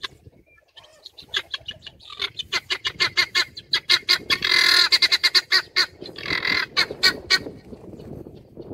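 Helmeted guinea fowl calling: a rapid chatter of harsh repeated notes, several a second, starting about a second in and growing louder. It is broken by two longer harsh calls, one in the middle and one near the end.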